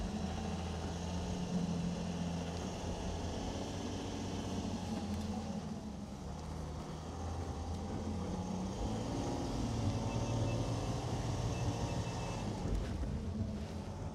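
Volkswagen Touareg SUV's engine running as the car drives off-road across a grassy slope, heard from outside the car; the engine note grows a little louder about ten seconds in.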